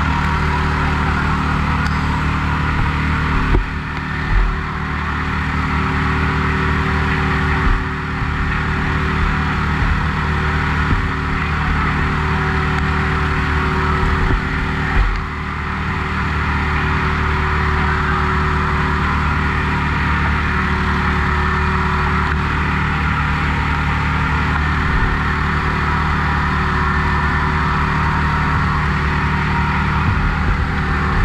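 An engine running steadily at high speed, most likely a fire pump, with a few knocks about 4, 8 and 15 seconds in.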